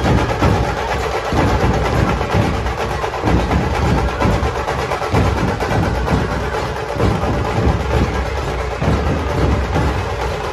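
A dhol-tasha troupe's massed dhol barrel drums, beaten with sticks, playing a loud, continuous rhythm.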